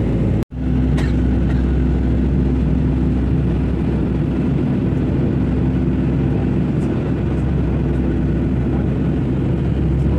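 Steady airliner cabin noise at a window seat: the jet engines and airflow running as a loud, even rumble with a low steady hum. The sound cuts out for a split second about half a second in, and there is a faint click about a second in.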